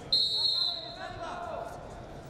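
Referee's whistle blown once, a short, shrill blast of about half a second, the loudest sound here. Voices in the arena hall follow it.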